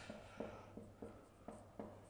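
Faint marker-pen strokes on a whiteboard while writing: about four short, separate scratches.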